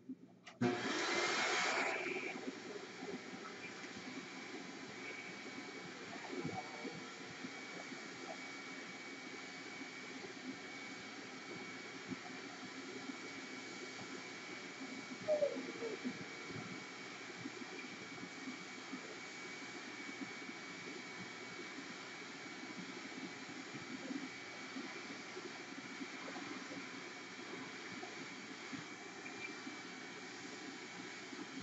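A steady mechanical rushing noise with a faint high whine, starting with a louder rush about a second in.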